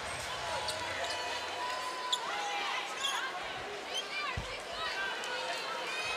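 Basketball arena crowd murmur with sneakers squeaking on the hardwood court and a single low thud about four and a half seconds in.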